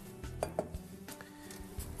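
Soft background music with a couple of light metallic clinks about half a second in, as a stainless steel mixing bowl is handled and set down on a worktop.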